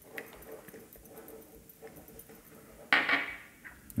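Chopped garlic being scraped off a spatula into a saucepan of frying onion: quiet frying with small scraping ticks, then a sudden louder burst about three seconds in that fades over about a second.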